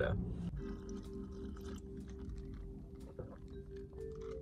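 Soft background music of a few steady held notes, with faint clicks and sips as ice water is drunk from plastic cups.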